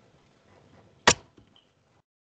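A single sharp click about a second in, over faint background noise.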